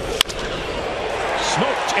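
A sharp crack as a wooden bat meets a pitched baseball squarely, driving a line-drive single. The crowd noise then swells.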